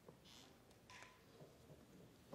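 Near silence in a small room during a pause between movements of a string quartet, with a faint click and a few brief, soft rustles as the players settle.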